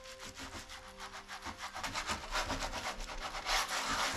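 A baren rubbed in quick back-and-forth strokes over paper laid on an inked woodblock, a rapid, scratchy rubbing that grows louder after about two seconds. This is the hand-burnishing that transfers the gray undertone block onto the print.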